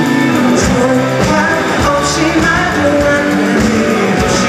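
Live rock band playing: electric guitars, bass and drums with cymbal crashes about every second and a half, under a male lead vocal.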